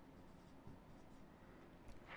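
Near silence, with the faint strokes of a marker writing on a whiteboard.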